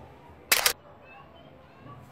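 A single short, sharp click-like burst about half a second in, then quiet room tone.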